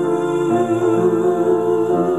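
A teenage girl's solo singing voice holding a long, wavering note with vibrato, over a piano accompaniment playing sustained chords.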